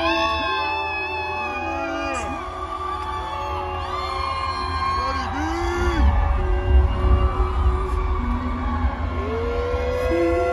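Live concert music heard through the PA from the crowd: the intro of a song, with a steady heavy bass under arching tones that slide up and down in pitch at several pitches at once.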